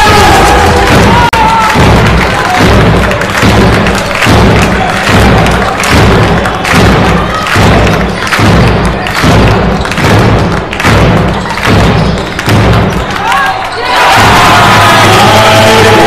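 Basketball arena sound: a rhythmic drum beat pulsing about once a second over crowd noise. About 14 seconds in it gives way to sustained music or singing.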